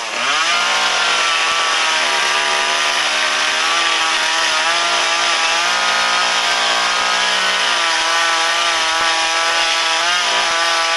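Gas chainsaw running at high revs, carving into an upright wooden log. Its pitch climbs back up in the first second, then holds with small wavers as the chain bites into the wood.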